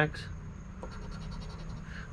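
A coin scratching the coating off a scratch-off lottery ticket in quick short strokes, uncovering one number.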